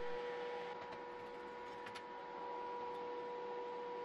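Faint steady electrical hum: a thin high whine over a quiet hiss, with a couple of faint ticks about one and two seconds in. No welding arc is heard.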